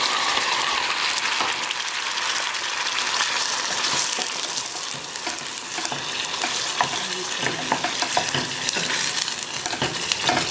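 Chopped onion and tomato sizzling in hot oil in a stainless steel saucepan: a steady frying hiss, broken by the scrape and tap of a wooden spatula stirring, the taps more frequent in the second half.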